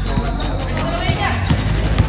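A basketball dribbled on a hard court, several quick bounces, heard under background hip-hop music with a steady beat.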